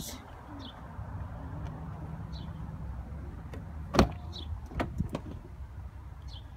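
A car's front door latch clicks open sharply about four seconds in, followed by a few smaller clicks as the door swings open, over a low steady outdoor rumble.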